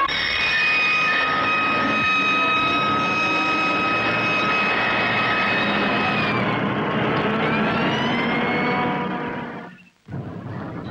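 Alarm sounding one steady high tone, then, about six seconds in, a police siren rising and falling over vehicle engine noise, fading away just before the end.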